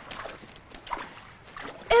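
Shallow sea water splashing and sloshing among shore rocks, with scattered light knocks of feet on stones; a voice begins just at the end.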